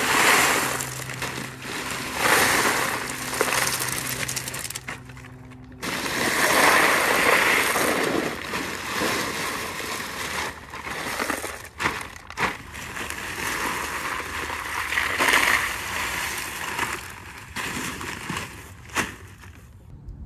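Small red decorative stones poured out of a bag onto a bed around a mailbox post, making a hiss and rattle. It comes in several long pours with pauses between, and a few sharp clicks later on.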